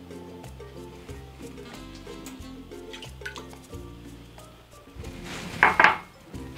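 Background music plays throughout. Near the end, a short splash of water is poured into an empty stainless steel pot.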